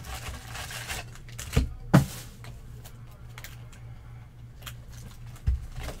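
Cardboard vending box being torn open by hand, with rustling and crinkling as it is handled, and two sharp knocks about one and a half and two seconds in.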